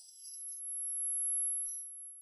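A thin, very high-pitched steady ringing tone fades in and grows stronger. It is a ringing-ears sound effect for the daze after a car crash.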